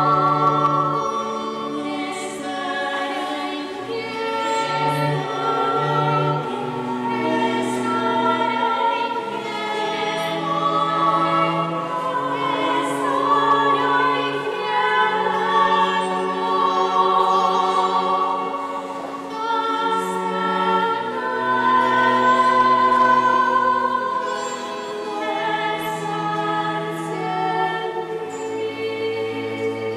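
A choir singing a slow liturgical hymn, several voices holding long notes.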